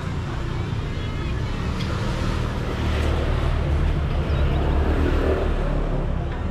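Motor scooter engine passing close by: a low drone that grows louder over the first few seconds, then eases near the end.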